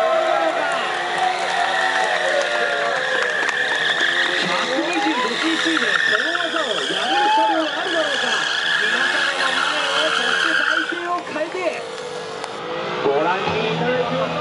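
KTM 125 Duke's single-cylinder four-stroke engine revving up and down repeatedly during stunt riding, its pitch swooping as the throttle is blipped. Tyres squeal on the asphalt from about two seconds in until about eleven seconds in.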